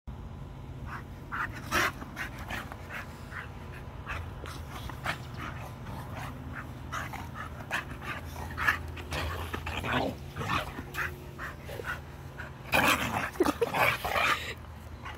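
Two dogs play-fighting on sand: short snorts, breaths and scuffles come and go, with a louder flurry of grappling near the end.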